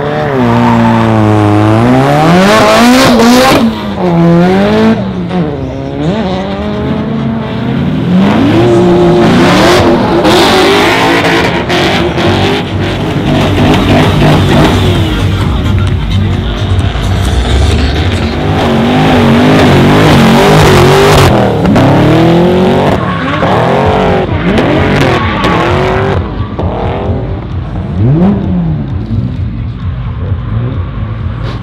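VE Holden Commodore SS V8 drifting, its revs rising and falling again and again as the rear tyres squeal and spin.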